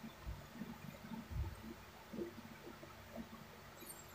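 Quiet room tone with a few faint, scattered low bumps, like the handling noise of a hand holding a phone.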